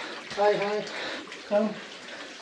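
Steady rush of water running among the boulders of a rock cave, with two short spoken phrases over it.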